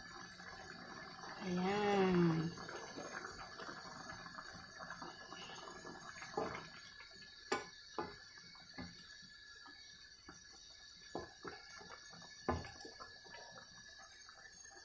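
A pan of beef papaitan broth simmering on a gas stove: a faint steady hiss with scattered soft pops and clicks, a few sharper ones in the second half.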